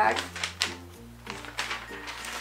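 Loose sheets of paper rustling and crackling as they are handled and tossed down, over background music with sustained notes that change chord about a second in.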